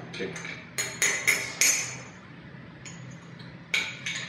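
A teaspoon clinking against a small porcelain espresso cup as coffee is stirred: four quick ringing clinks about a second in. A brief, sharper noise follows near the end.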